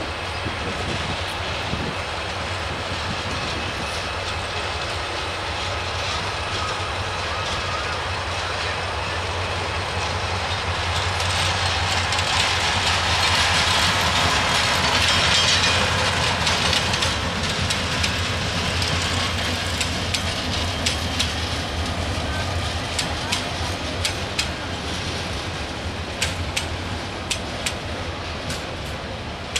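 A diesel locomotive hauling a passenger train passes close by. The steady engine and wheel noise builds to its loudest about halfway through as the locomotive goes past. In the second half the coaches roll by with sharp, irregular clicks of wheels over rail joints.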